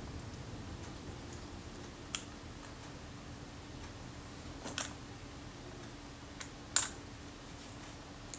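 A few faint clicks and taps of the metal parts of a Schneider Retina Xenon 50mm f/1.9 lens barrel being turned and lined up by hand, the loudest about seven seconds in, over a faint steady hum.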